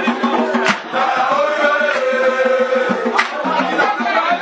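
Live music: a chanted vocal line that holds a long note and then falls in pitch, over a repeating low note, with a few sharp drum strikes.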